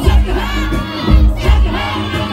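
Live Tamang folk song played loud through a stage PA, with a quick steady drum beat and a crowd of voices shouting and singing along over it.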